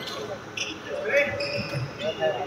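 Badminton game in a large, echoing sports hall: players' voices over the play, with short high squeaks of shoes on the wooden court.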